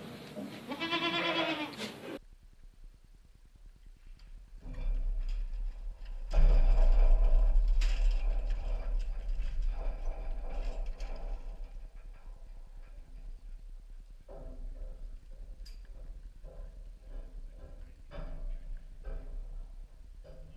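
A goat bleats once in the first two seconds. After that there is a low rumble, loudest a few seconds later, with scattered knocks and clatter.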